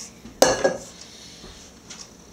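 Stainless steel mixing bowl set down on a countertop: a sharp metallic clank about half a second in, followed at once by a smaller knock and a brief ring.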